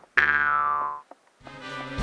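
A comic sound effect: a tone that starts suddenly and slides down in pitch for just under a second, then stops. After a brief silence, music begins near the end.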